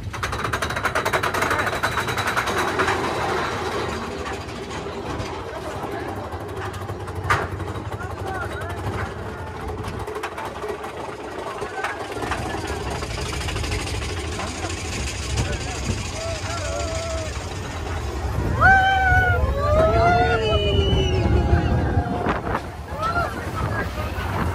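Big Thunder Mountain Railroad mine-train roller coaster running along its track: a steady low rumble and rushing noise of the open car. Riders yell and whoop over it for a few seconds near the end.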